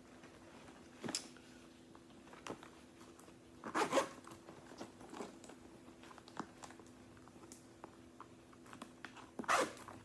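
Leather handbag being handled and unzipped: scattered soft clicks and rustles, with a short zipper pull about four seconds in and another near the end.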